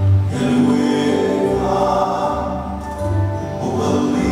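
Polynesian song with a group of voices singing together in long held notes over a steady low bass.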